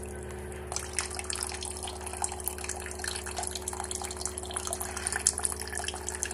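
RO water purifier running: the booster pump gives a steady hum while the first purified water from a newly fitted Filmax 80 membrane trickles and splashes out with irregular drips.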